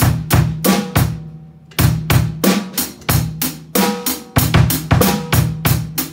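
Drum kit playing a kick-heavy groove: bass drum and snare strikes in a steady rhythm, about three hits a second, with a short break near the middle.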